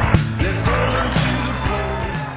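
A live rock band playing on stage at full volume: a drum kit keeping a beat under sustained bass and guitar notes.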